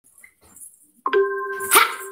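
A woman's voice calling out one long, steady held note, starting suddenly about a second in after near silence.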